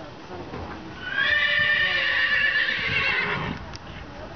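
A horse whinnying: one loud, long call of about two seconds, starting about a second in.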